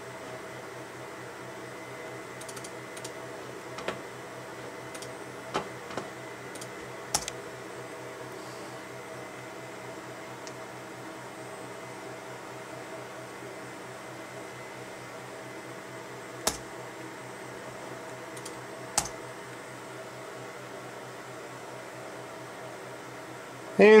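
Steady low hum with a faint high tone, broken by about six single sharp clicks and taps from hands working the MacBook and an iPhone. The clicks fall in a cluster early on and two more near the two-thirds mark.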